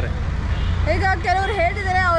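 Speech starting about a second in, over a steady low rumble of road traffic.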